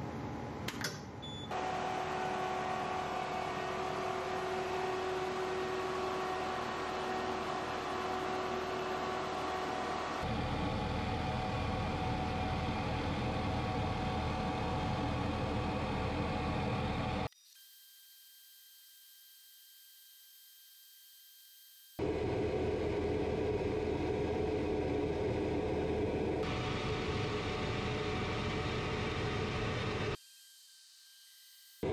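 xTool P2 CO2 laser cutter running a cutting job on plywood: a steady mechanical whir from the machine's fans and moving laser head. It is broken into several cuts, with a much quieter stretch in the middle that holds only a faint steady whine.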